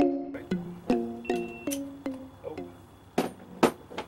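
Background music: a plucked-string melody in an even beat that dies away a little over halfway through, followed by two sharp clicks near the end.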